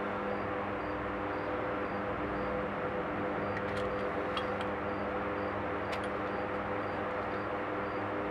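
A steady machine hum, with a faint high-pitched tick repeating about twice a second and a few light clicks midway.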